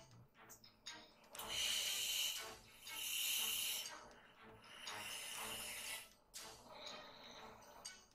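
A person's breathing close to a headset microphone: three long, hissy breaths, each about a second, then a fainter one near the end.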